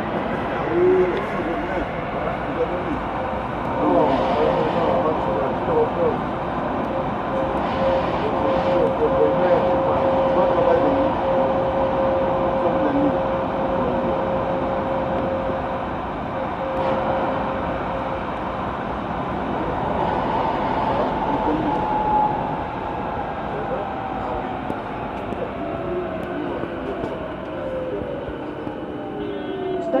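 VAL 206 rubber-tyred automated metro train running through a tunnel, heard from the front of the car. Its electric traction whine rises in pitch as it accelerates at the start and holds over a steady running rumble. Near the end several whining tones fall in pitch as it brakes into a station.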